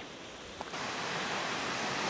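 Steady outdoor hiss of wind or distant running water, with a faint click about two-thirds of a second in, after which the hiss grows slightly louder.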